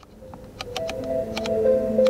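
Music from the Ford Mustang Mach-E's Bang & Olufsen sound system, getting steadily louder as its in-screen volume knob is turned up. Several sharp clicks sound over the rising music.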